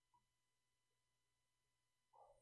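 Near silence: a pause in the talk, with only a faint steady tone in the background.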